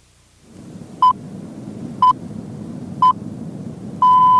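Radio time-signal pips, the BBC-style pips that lead into a news bulletin: three short high beeps, one a second, over a low steady rumble that fades in.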